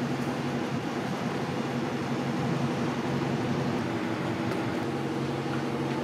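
Steady outdoor background noise: an even hiss with a low, unchanging hum, like machinery or traffic running out of sight.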